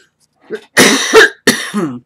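A woman coughing hard, two or three loud, harsh coughs in quick succession starting about half a second in, then one more sharp cough trailing off in her voice. She puts the cough down to pneumonia she still has.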